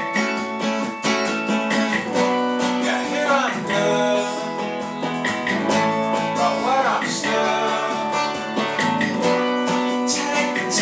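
Acoustic guitar strummed steadily together with a chorded zither-type instrument, played live as a duo. A voice sings sliding notes about three seconds in and again near seven seconds.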